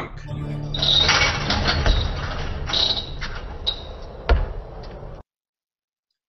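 A basketball being played at an outdoor hoop, heard through a video call's screen share: busy rattling background noise with a few knocks and one sharp bang of the ball a little after four seconds in. The sound cuts off suddenly about five seconds in.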